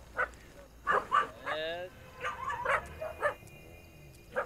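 A dog barking in short separate bursts, with one longer, wavering whining yelp about a second and a half in.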